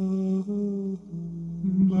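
A male voice humming held notes, layered with a live loop. The pitch steps between sustained tones every half second or so, with a brief drop about a second in and a louder note swelling in near the end.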